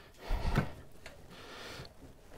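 Faint handling noise of a motorcycle battery being worked out of a tight compartment by hand: a soft scrape and a low bump about half a second in, then quieter rubbing.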